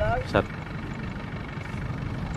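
Farm tractor's diesel engine idling steadily, a low even rumble, with a man's voice finishing a word at the start.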